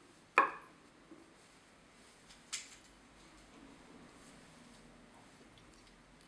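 Small metal hackle pliers knocking while a feather is wound around the hook in a fly-tying vise: a sharp click about half a second in with a brief ring, and a quieter click about two and a half seconds in.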